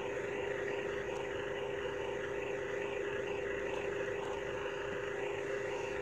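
A steady engine drone holding one constant pitch, with no change in level.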